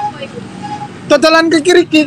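A man's voice calling out "boso" loudly and drawn out, starting about a second in, over a steady low rumble of street traffic.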